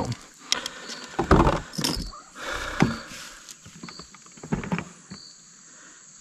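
Irregular knocks, taps and rustling from an angler moving about on a plastic fishing kayak.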